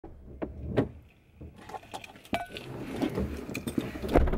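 Car door open and a person getting into the driver's seat: scattered clicks and knocks with a jingle of keys, one clink ringing briefly a little over two seconds in.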